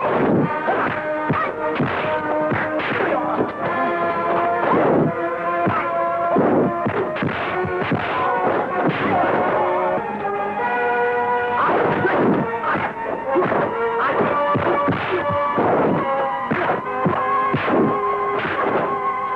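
A film score with held notes, over a rapid run of dubbed punch and kick impact sound effects from a kung fu fight.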